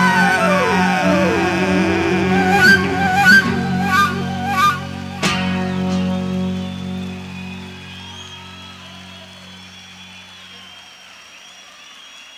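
Live band playing the final bars of a song: a held chord with notes sliding down in pitch, a few accented hits, and a last sharp stroke about five seconds in. The chord then rings out and fades away.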